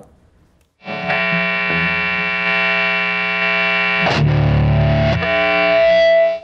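Electric guitar played through the Strymon Riverside multistage drive pedal with heavy distortion: a chord struck about a second in and left ringing, a second heavier chord around four seconds in, then a single high note sustaining to the end.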